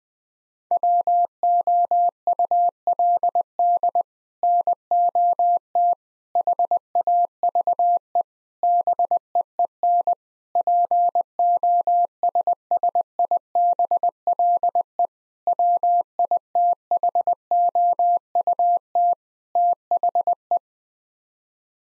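Morse code at 20 words per minute, a single steady pitched tone keyed in dots and dashes with short gaps between words, spelling out a seven-word English phrase. It starts about a second in.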